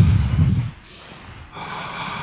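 A man's breathy "hmm" close to the microphone, followed about a second and a half in by a softer, drawn-out breath.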